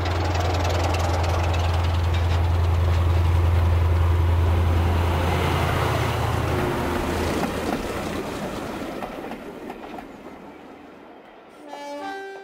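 A model diesel train with coaches passing on the layout's track: a steady low hum and running rumble that swells, then fades away as it goes by. A few short musical notes sound near the end.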